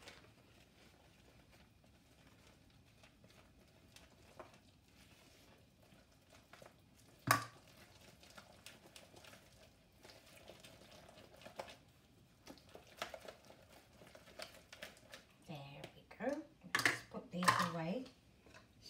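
Banana fritter batter being stirred in a plastic mixing bowl: faint, soft stirring with small clicks of the utensil against the bowl, and one sharp knock about seven seconds in. A voice is heard briefly near the end.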